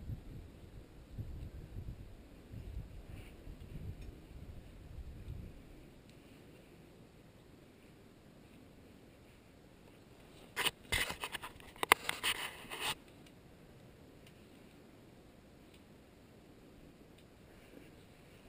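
Close handling noise: a gloved hand and rope rubbing and scraping right by the camera, a burst of sharp scratchy clicks lasting about two seconds, starting about ten and a half seconds in. Before it, a low rumble fades out after about five seconds.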